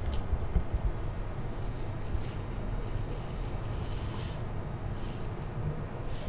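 Steady low rumble inside an enclosed Ferris wheel gondola as the wheel turns, with no distinct events.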